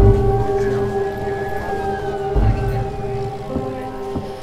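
A siren wailing in one slow rise and fall over a steady low drone, with dull thumps at the start and about halfway through.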